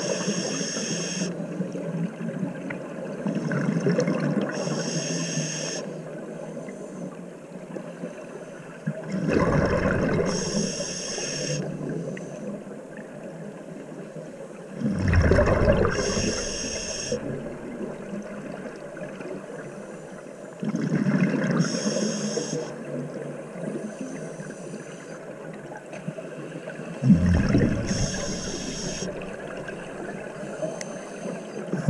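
Scuba diver breathing through a regulator underwater, in a slow, regular rhythm of about one breath every six seconds. Each breath is a hiss of inhaled air through the regulator and a rush of exhaled bubbles.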